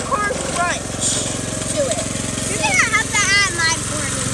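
A small engine running steadily with an even low pulse, with a child's voice heard briefly in the second half.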